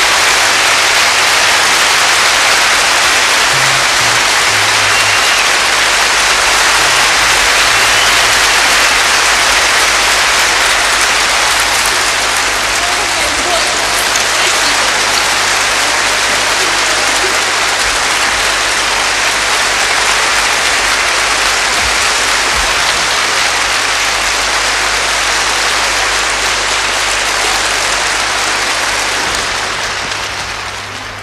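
Large concert audience applauding steadily, a long ovation that eases off a little near the end.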